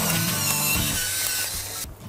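Pepper mill grinding pepper over a pan of soup: a steady grinding rasp that stops abruptly just before the end.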